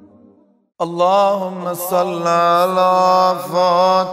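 Background music fades out into a moment of silence. About a second in, a man's voice begins a chanted Shia rowzeh lament, holding long notes with wavering ornaments.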